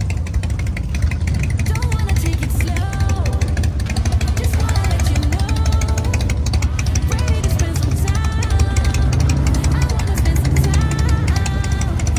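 Background pop song with a sung melody over a steady drum beat and heavy bass.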